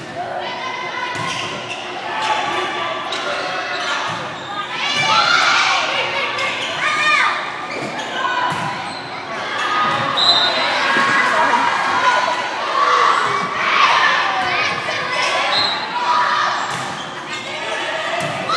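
Volleyball rally in a gymnasium: the ball is struck again and again with sharp hits, among players' and spectators' shouts and cheers that echo in the hall.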